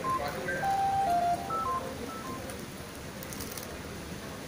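A short melody of electronic beeps, single clean tones stepping up and down in pitch, lasting about two seconds over a low hall murmur.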